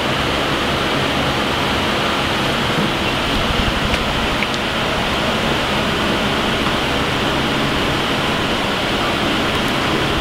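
Steady, even rushing noise with a faint low hum underneath and no distinct events.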